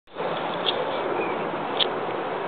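Steady outdoor background hiss, with two brief high-pitched chirps, one under a second in and one near the end.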